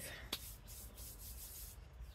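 A brief pause between words: faint background noise under a low steady rumble, with one short click about a third of a second in.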